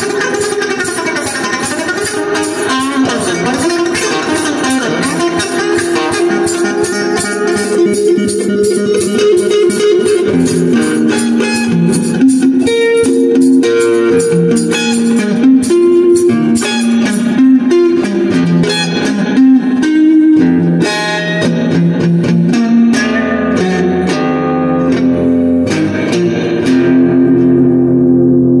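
Electric guitar being played: a continuous run of picked notes.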